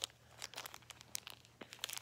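Small plastic toy blind-bag packet crinkling and tearing as it is picked open by hand: a scatter of faint, sharp crackles.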